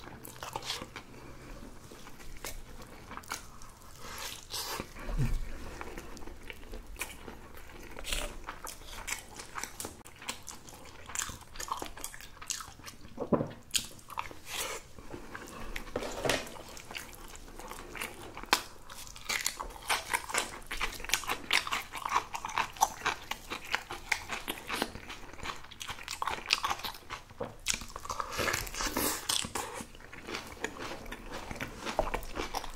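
Close-miked chewing and biting, with irregular crunches and wet mouth clicks, as a person eats crunchy spicy cabbage kimchi with rice and Spam.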